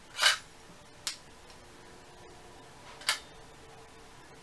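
Kodak Brownie Flash Six-20's shutter tripped, firing a No. 22 flashbulb: a short burst of noise about a quarter second in, a small sharp click about a second in, and another short burst near the end.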